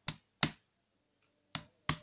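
Four sharp, dry clicks in two quick pairs, each pair about a third of a second apart: one pair right at the start and the other near the end.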